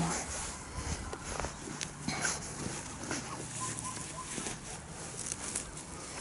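Light rustling and scattered small clicks from a nonwoven garden cover being handled over soil and snow.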